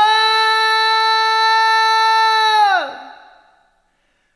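A singing voice, unaccompanied, holding one long high note that drops in pitch and fades out a little before three seconds in.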